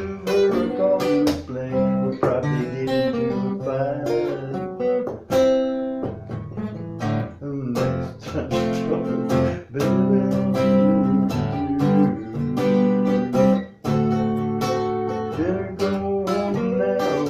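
Cutaway acoustic guitar strummed in a steady rhythm, changing chords.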